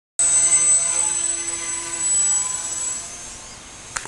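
Night Razor RC delta wing's electric motor and propeller whining as the plane is hand-launched, the sound dropping away about three seconds in as it flies off.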